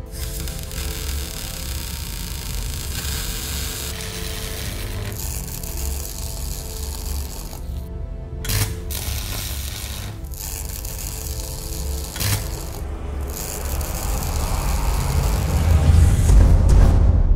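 Dramatic soundtrack music layered with a machine-like sound effect. Two sharp hits come about eight and twelve seconds in, and a deep rumble swells near the end.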